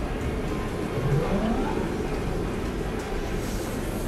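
Casino floor ambience: a steady low din with background music, and one rising tone about a second in.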